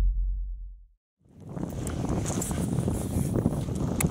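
A deep boom sound effect fading out over about the first second, then a brief silence. Then steady wind noise on the microphone with small knocks and water sounds from the kayak on open water.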